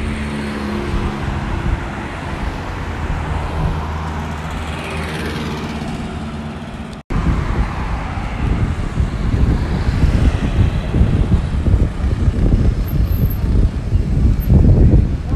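Road traffic noise: vehicle engines running with steady tones, and a vehicle passing about four to six seconds in. After a sudden cut about seven seconds in, a louder, uneven low rumble of traffic.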